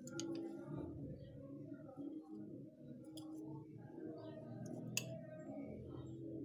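Metal fork clicking against a porcelain plate a few times while cutting through a soft gelatin: once near the start, again around three seconds in, and most sharply about five seconds in.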